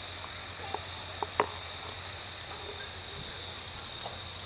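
Quiet outdoor night background with a steady high-pitched whine and a low hum, broken by a few faint clicks in the first half.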